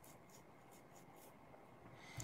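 Near silence: room tone with faint, soft scratching repeated about three to four times a second.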